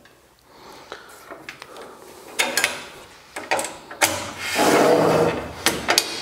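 Crosscut fence on the sliding table of a Hammer B3 combination machine being handled: a few clicks and knocks, then a sliding rub lasting about a second and a half, ending in a sharp click near the end.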